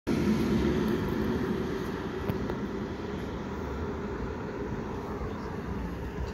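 Steady low rumble of idling emergency-vehicle engines, a little louder in the first second, with a faint click a little after two seconds.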